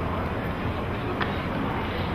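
Steady low rumble of outdoor background noise, most likely wind on the microphone over open-air stadium ambience, with a faint click about a second in.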